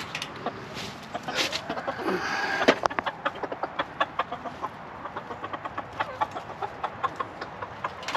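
Chickens clucking as they go after a bunch of radish greens tossed onto straw bedding. There is a rustle of leaves about two seconds in, then many short, sharp taps.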